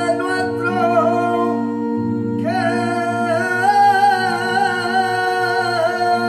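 Live singing from a flamenco mass: a sung line with vibrato over steady sustained low backing notes. One phrase ends about a second in, and a longer held phrase begins about two and a half seconds in.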